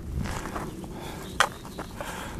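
Low, uneven outdoor background rumble, with a single sharp click about one and a half seconds in.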